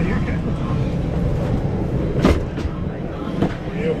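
Steady low rumble of a parked Boeing 747's cabin air system, with rustling and knocks from a handheld camera being jostled, the loudest knock about two seconds in and another a little after three seconds.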